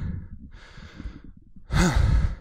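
A man breathing hard into a handheld microphone, winded after dancing: several heavy breaths, the loudest a voiced sigh near the end.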